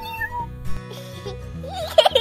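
A cartoon cat meow sound effect, a wavering pitched call that starts near the end, over background music with a steady beat.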